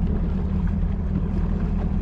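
A boat motor running steadily at low speed, an even low drone.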